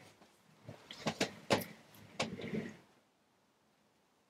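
Handling noise as a large crochet blanket is lifted and held up: a few soft knocks and rustles over the first three seconds.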